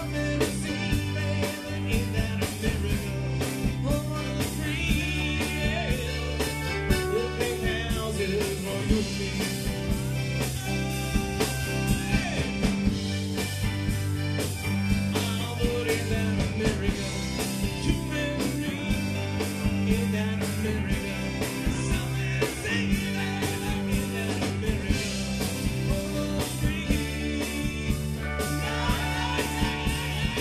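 Live rock band playing an instrumental passage: electric guitar over a steady drum beat.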